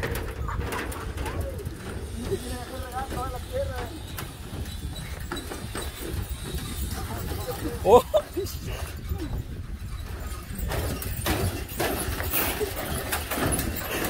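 Footsteps on the deck of a suspension footbridge, with wind rumbling on the microphone and faint voices. A short vocal call about eight seconds in is the loudest sound.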